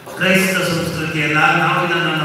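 A man's voice speaking in long, fairly level-pitched phrases, after a brief pause at the start.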